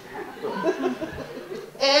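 Live audience laughing together, many voices overlapping.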